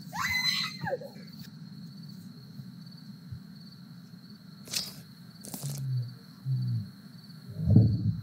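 Horror-film soundtrack: a cry sliding down in pitch at the start over a steady high-pitched drone, then low growling vocal sounds, the loudest near the end.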